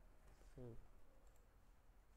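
Near silence with a few faint computer mouse clicks, and one short voiced sound from a person about half a second in.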